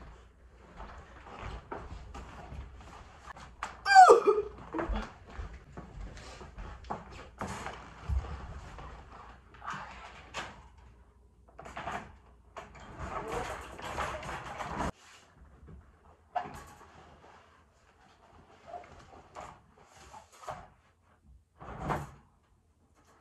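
A wire dog crate and its fabric bedding being handled: scattered knocks, clinks and cloth rustles. A brief squeak that glides in pitch comes about four seconds in and is the loudest sound, and a longer stretch of rustling follows around two thirds of the way through.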